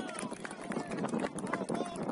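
Shouting voices of football players and sideline teammates during a play, over a dense run of sharp clicks and knocks.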